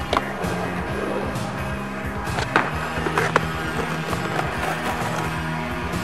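Skateboard wheels rolling on asphalt while the rider pushes, with a few sharp board clacks spread through it, under music with steady held tones.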